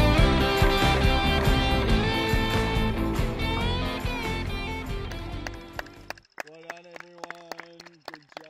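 A band song with guitars, bass and drums fading out steadily over about six seconds. After it a quiet voice is heard.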